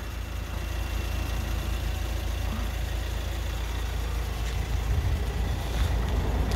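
Hyundai iX35's 1.7-litre four-cylinder diesel engine idling steadily, a low, even rumble.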